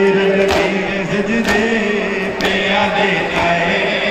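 A crowd of men chanting a noha, a Shia mourning lament, with a sharp collective beat about once a second: chest-beating (matam) in unison.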